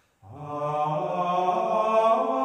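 Gregorian offertory chant sung by male voices in a single melodic line. After a brief silence a new phrase begins about a quarter second in, rising in pitch and then holding long notes.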